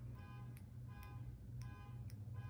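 Faint car alarm sounding, a short electronic beep repeating evenly about two or three times a second, over a low steady hum.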